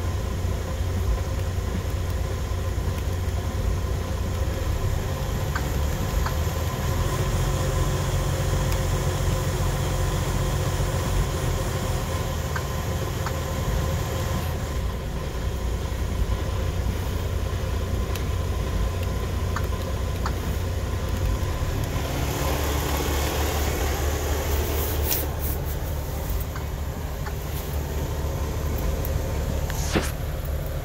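Diesel engine of a Freightliner Cascadia semi truck idling steadily in neutral, heard from inside the cab as a continuous low rumble. Some rustling and a few clicks come a few seconds before the end.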